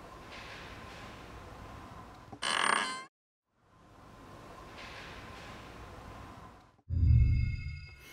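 A faint hiss, broken about two and a half seconds in by a short, loud burst of ringing, wavering metallic tones that cuts to dead silence. Near the end comes a heavy low thud with a lingering high metallic ring.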